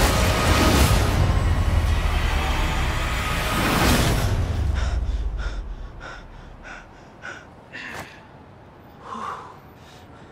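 Loud trailer score with action sound effects, building to a swell about four seconds in, then dropping away. What follows is quiet: a run of short, soft breaths about two a second, a sharp click, and a louder gasp near the end.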